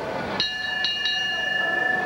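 Boxing ring bell struck about three times in quick succession, its metallic ring hanging on for over a second, over low arena background noise.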